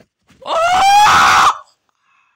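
A loud, high-pitched scream about a second long, rising slightly in pitch and turning rough and rasping near its end.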